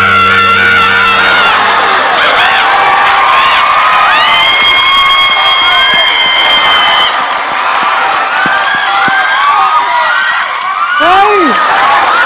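A woman shrieking and half-singing into a handheld microphone in fright at a live green iguana set on her head, with one long high held shriek in the middle. An audience cheers and shouts around her. The karaoke backing track's bass drops out about two seconds in.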